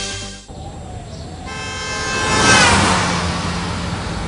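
Music cuts off abruptly about half a second in. Then a horn-like tone swells, falls in pitch as it reaches its loudest, and fades, like a vehicle sounding its horn as it passes.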